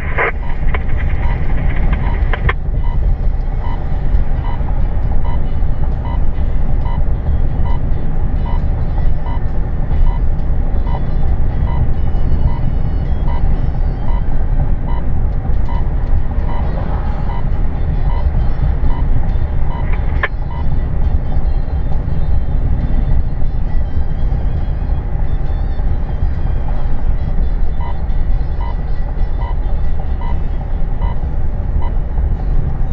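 Steady low road and engine noise heard inside a moving car, with a faint regular tick a little more than once a second through much of it, pausing in the middle stretch.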